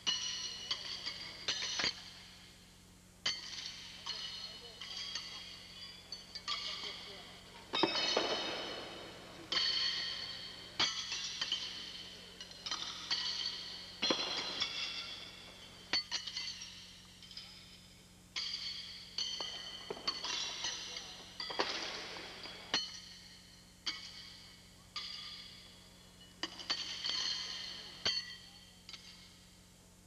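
Steel pitching horseshoes clanging against steel stakes and each other: sharp metallic clanks with a short ring, irregular, about one a second and sometimes overlapping, from several courts pitching at once.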